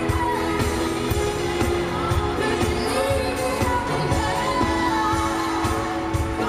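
Live pop song: a female singer's voice over a band with a steady beat and sustained chords, recorded in a large arena.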